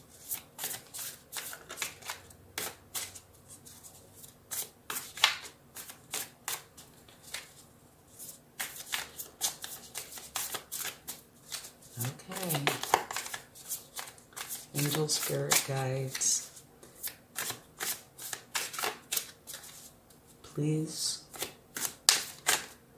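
A deck of tarot cards being shuffled by hand: a long run of quick, irregular slaps and flicks of card against card. A few short hums of voice come in between, about halfway through and near the end.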